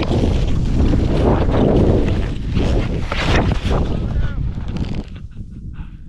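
Wind rushing over an action camera's microphone and skis scraping over snow on a fast run, ending in a fall into the snow. The noise is loud until about five seconds in, then drops away.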